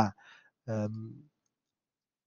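A man's voice trailing off at the end of a phrase, then a short, flat-pitched hesitation sound a little over half a second in, followed by about a second of silence.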